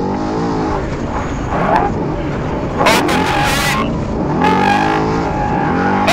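Trophy truck engine running hard at racing speed, with road and wind noise. Its pitch drops early on, then climbs steadily from about four seconds in as it accelerates. There is a brief loud burst about three seconds in.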